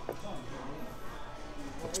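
A single sharp clink of a metal knife against a ceramic plate right at the start, over faint background voices of diners.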